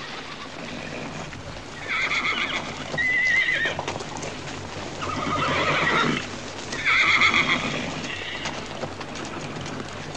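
Horse whinnying three times, about two, five and seven seconds in, with hoofbeats on dirt underneath.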